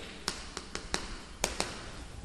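Chalk tapping against a chalkboard while writing: about seven sharp, separate taps.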